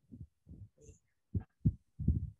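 A series of short, muffled low thumps, about three a second.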